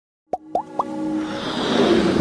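Animated logo intro sound effects: three quick pops, each rising in pitch, followed by a whoosh that swells steadily louder.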